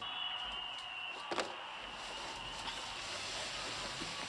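Television set switched on to a sports broadcast: a steady noise with a high steady tone that comes on suddenly, and a single click a little over a second in.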